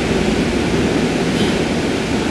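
Steady rushing background noise with no clear pitch and no distinct events.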